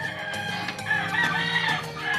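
A rooster crowing once, in one long call that rises and then falls, over steady background music.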